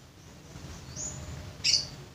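Two brief high-pitched bird chirps, the first a short rising note, the second about two-thirds of a second later.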